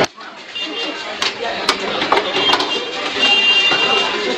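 Quick clicks and knocks of metal tongs and cakes on stainless steel baking trays during fast bagging, over busy background voices; a thin steady high tone comes in near the end.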